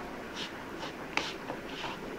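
Thick semolina, curd and chopped-vegetable mixture being stirred in a plastic bowl: soft, faint scraping strokes, about five in two seconds.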